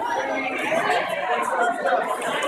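Indistinct chatter of several voices, echoing in a large indoor pool hall.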